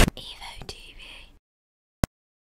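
A processed, whispered voice tag from a channel logo sting, echoing and fading out within about a second and a half. Silence follows, broken by one short click near the end.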